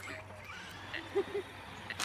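Faint, short voice-like sounds: a brief rising call near the start, then two quick low pitched blips a little past a second in.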